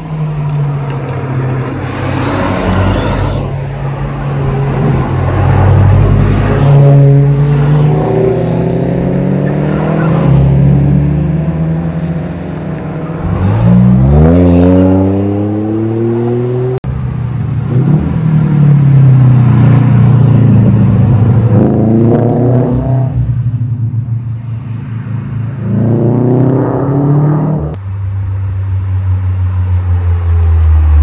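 Several cars driving hard through a curve one after another, their engines revving up and fading as each one passes. The pitch climbs steeply in a few strong pulls, the clearest about halfway through and two more near the end.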